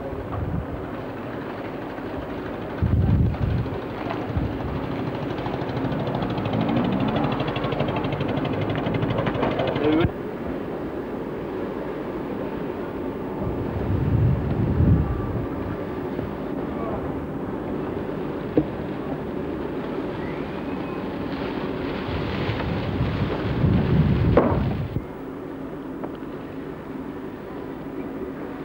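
Outdoor camcorder sound: indistinct background voices with gusts of wind rumbling on the microphone, changing abruptly at edits about ten seconds in and near the end.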